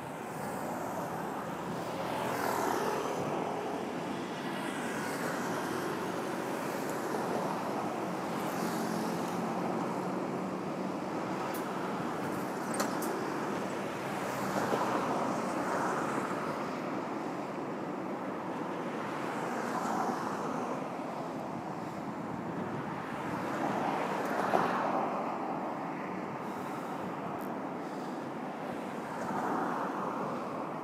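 City street traffic: cars passing one after another, each swelling up and fading away over a steady road hum, with a couple of brief clicks.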